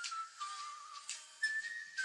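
A person whistling a slow tune, one note at a time, sliding between pitches with a slight waver, with a few short rustling clicks alongside.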